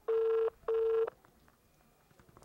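Telephone ringback tone from a smartphone on speaker: a double ring of two short, steady beeps about a fifth of a second apart, the sign that the call is ringing at the other end and not yet answered.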